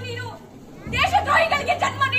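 A woman declaiming in a raised, high voice through a PA microphone, with a short pause about half a second in before she comes back louder. A steady low electrical hum runs underneath.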